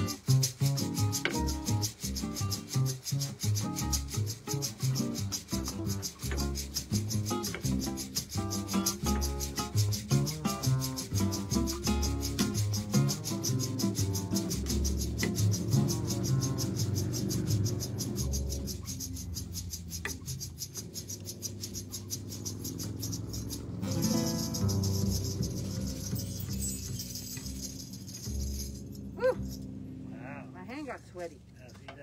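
Acoustic guitar, upright bass and a shaker playing a Latin-style jazz tune, the shaker keeping a fast, even pulse. The playing thins out in the second half and the tune ends just before the close.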